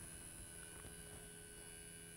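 Faint steady electrical hum from the electromagnet vibrator of a Melde's experiment apparatus, running on a transformer and driving a stretched string into vibration.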